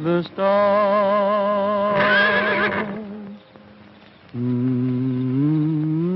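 A man humming a slow tune without words: a long held note, then a new low phrase that steps up in pitch. A horse whinnies briefly over the held note about two seconds in.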